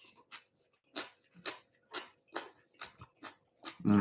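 Short, quick breaths and mouth sounds from a person eating a mouthful of very spicy food, about two a second.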